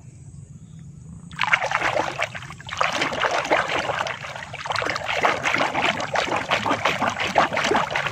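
A hand swishing and scrubbing a plastic toy figure under shallow water to wash it clean: rapid, continuous splashing and sloshing that starts about a second and a half in, with a brief lull near three seconds.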